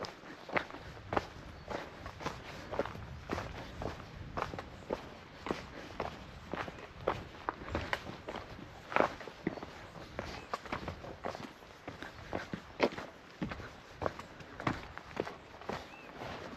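Footsteps crunching on a stony dirt trail, an even walking pace of about two steps a second.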